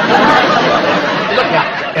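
A studio audience laughing at a punchline: a big laugh that breaks out all at once and eases off slightly toward the end.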